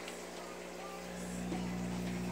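Aquarium pumps and filters running: a steady low hum with a faint hiss of moving water.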